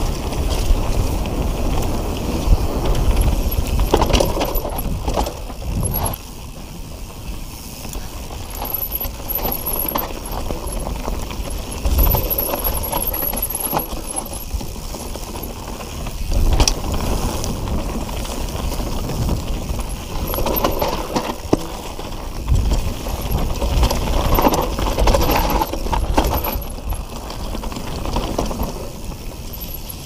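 Mountain bike riding down a leaf-covered dirt trail: tyres rolling and crunching over dry leaves, with the bike's chain and parts rattling and clicking over bumps and wind buffeting the microphone. The loudness rises and falls with the terrain, quieter for a few seconds about a quarter of the way in.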